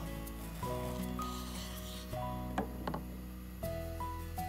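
Background music of held notes changing every half second or so, with a few short knocks of a knife blade against a wooden cutting board as a tomato is cut, a little past halfway.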